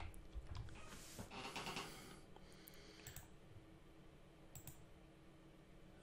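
A few faint, scattered clicks from a computer mouse and keyboard, mostly in the first three seconds, over otherwise near silence.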